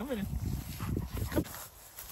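Short voice-like sounds, one bending in pitch right at the start and a brief one about a second and a half in, over low rumbling noise.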